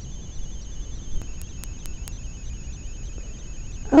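Steady room noise: a low hum with a thin, steady high-pitched whine over it, and a few faint ticks about a second or two in.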